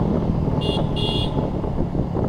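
Motorcycle engine running steadily while riding, with two short, high-pitched horn beeps a little over half a second in, the second slightly longer.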